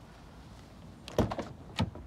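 Car door being opened: a quick cluster of sharp clicks from the handle and latch about a second in, then one more sharp click near the end as the door swings open.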